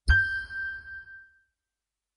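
A single bright electronic chime with a low boom under it, struck once and ringing out to fade over about a second and a half: the closing logo sting of a Sony advert.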